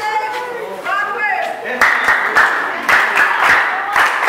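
Voices for the first second and a half, then a group of people breaks into steady clapping about two seconds in.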